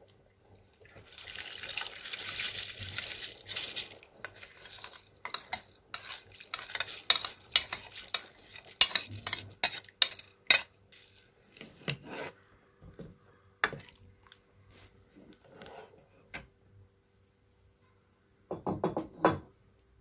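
Wheat grains are poured from a plastic bowl into a large metal pot of simmering broth, with a hiss of sliding grain for a few seconds. Then comes a run of sharp clinks and scrapes as a metal ladle knocks the last grains out of the bowl and into the pot. There is one more short clatter near the end.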